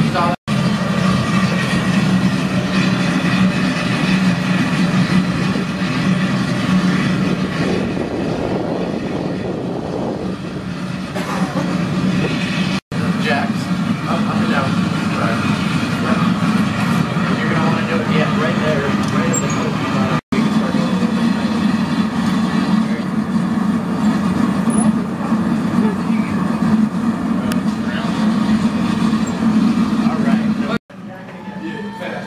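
Steady low drone of a trailer-mounted glassblowing furnace running, with faint voices behind it. The drone is broken by three brief dropouts, about half a second in, about halfway, and about two-thirds of the way through.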